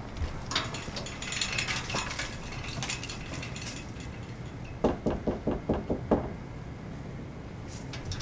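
A metal-bar fence rattling and clinking as a deer caught in it struggles. Scattered scraping and clicking come first, then a quick run of about seven clanks about five seconds in.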